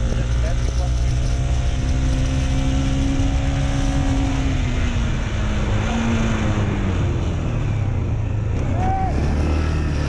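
Motorcycle engine running under way, its revs climbing a couple of seconds in and then easing off, with wind noise on the helmet-mounted microphone.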